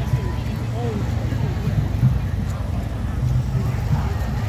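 Police motorcycles passing slowly on a wet road, their engines giving a steady low rumble, with voices of the crowd chattering around.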